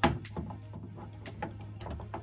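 Small hard-plastic clicks and taps as a toy grenade launcher is worked into an action figure's hand: one sharp click at the start, then a few softer clicks.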